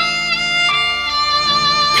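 Background film score of slow, sustained violin-like string notes, moving to a new note partway through.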